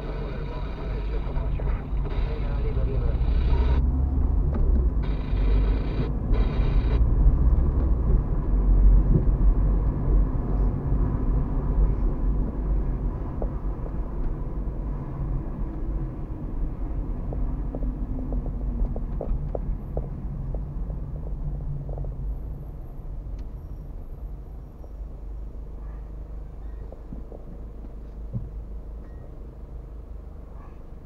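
Low road and engine rumble heard inside a car's cabin as it drives along a street. The rumble is loudest in the first third and fades steadily as the car slows to a stop.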